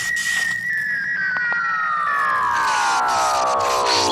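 Synthesized sci-fi intro sound effect: a high whistling tone holds briefly, then from about half a second in slides steadily down in pitch, like a power-down, over a hiss of electric crackling.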